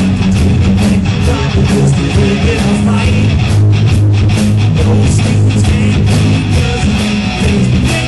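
Live rock band playing loudly: electric guitar, bass guitar and drum kit.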